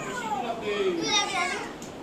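Speech only: young children's voices talking and calling out, with gliding pitch.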